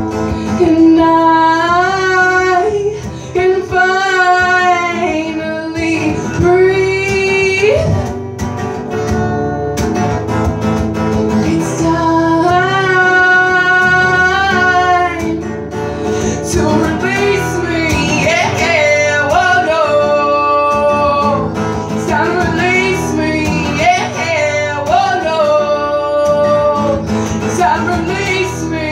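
A woman singing long, wavering held notes over a strummed acoustic guitar, performed live.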